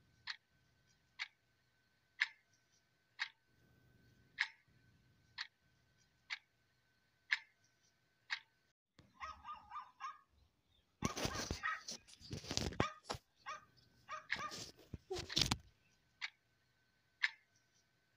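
A clock ticking about once a second over a faint steady tone. Partway through the ticking stops for several seconds of louder, noisy yapping from a small dog, and it comes back near the end.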